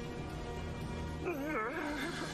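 Anime soundtrack music with steady held notes. A bit past halfway, a high wavering cry comes in, its pitch wobbling up and down.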